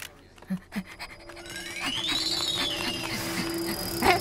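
Cartoon sound effects: two soft pops, then a whistle-like tone that rises and falls over about a second and a half, above a held low note and light ticking.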